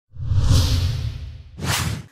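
Two whoosh transition effects from a news intro graphic. First a long swell with a deep rumble that fades over about a second and a half, then a short, sharper whoosh just before the end.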